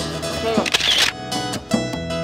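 A quick series of camera shutter clicks, starting about a second in, over background music.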